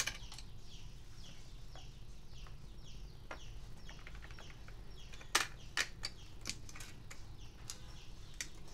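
Light clicks and taps of a CPU being set into an LGA1155 motherboard socket and its metal load plate and retention lever pressed down, with a few sharper clicks about five to six seconds in.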